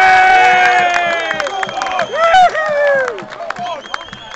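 Several people shouting and cheering at once to celebrate a goal, long held yells at different pitches, loudest at the start and trailing off, with a fresh shout about two seconds in.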